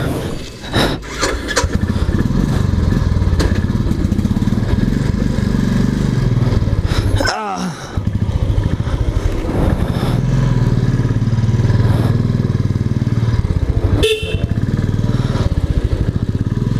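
Royal Enfield Classic 350's single-cylinder engine running with a rapid, even pulse as the motorcycle pulls away and rides. The engine sound dips briefly about halfway, and a short horn beep sounds about two seconds before the end.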